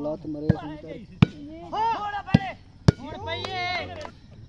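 Hands striking a plastic volleyball during a rally: four sharp smacks, the last two close together, with players' loud shouts between them.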